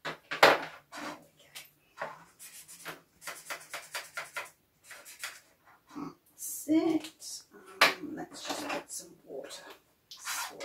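A pen colouring on cardboard: a run of quick, scratchy strokes, about six a second, in the first half, with a few louder, rougher scrapes near the start and later on.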